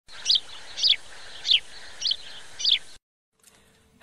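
A bird chirping five times, about every 0.6 seconds, each a short high note sliding down in pitch, over a steady hiss; it cuts off abruptly about three seconds in.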